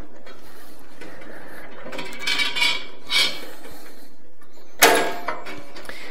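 Steel bandsaw blade scraping and clinking against the metal table, fence and wheels of a Delta 14-inch bandsaw as it is worked into place by hand, with a sharp metallic clack near the end.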